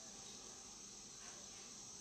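Faint steady high-pitched insect chorus of crickets, with no other clear sound over it.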